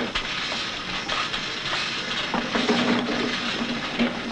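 Building-site background noise: a steady rushing hiss with scattered small clicks, joined a little past halfway by a low steady hum.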